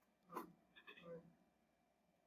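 Near silence, with a faint tap and a few soft scratches of a stylus writing on a screen.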